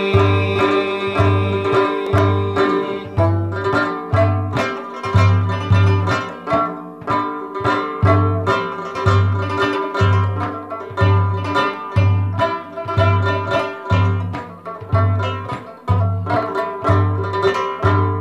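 Instrumental passage of a ginan devotional song: a plucked string instrument plays quick notes over a steady low drumbeat, about one and a half beats a second.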